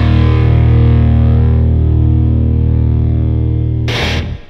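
Heavy metal band's distorted electric guitar and bass holding a closing chord and letting it ring out, the high end slowly fading, with a sharp final hit near the end.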